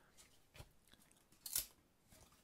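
Faint handling of baseball cards: slightly sticky cards sliding and peeling apart between the fingers, with a small snap about half a second in and a louder one about a second and a half in.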